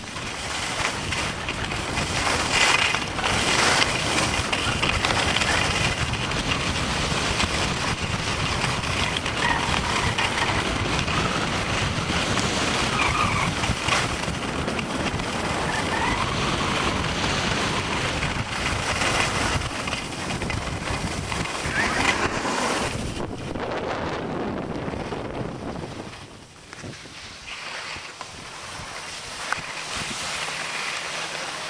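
Wind buffeting the camera microphone and skis hissing on packed snow during a downhill run. The noise dies down about 24 seconds in as the skiing slows.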